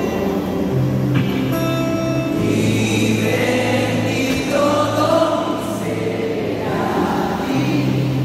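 Live Christian worship band playing loud through the PA, with guitars and bass under several voices singing together.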